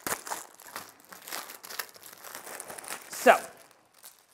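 A plastic-wrapped pack of polypropylene button envelopes being opened and the thin plastic envelopes pulled out, giving a string of irregular crinkles and rustles.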